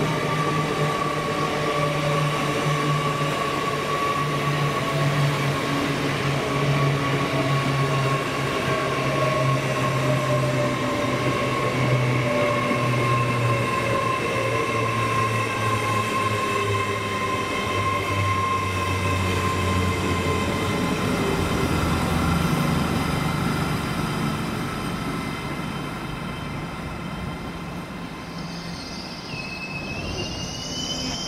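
LNER Class 801 Azuma electric train running past: a steady rail rumble with several whining tones that slowly fall in pitch, fading over the last few seconds as it draws away. Right at the end a new whine rises in pitch.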